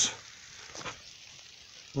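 Rain falling, a steady hiss.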